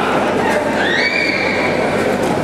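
Boxing-hall crowd noise with overlapping voices, and about halfway through a spectator's shrill call that rises in pitch and then holds for about a second.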